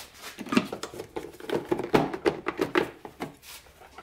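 Irregular clicks and knocks of a hard plastic snowmobile glove box cover being lifted off and handled.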